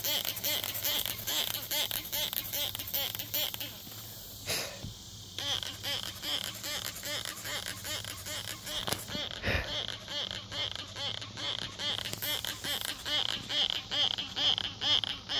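Dense chorus of calling insects, a fast pulsing high buzz that drops away briefly about four seconds in. A single low thump comes just past halfway.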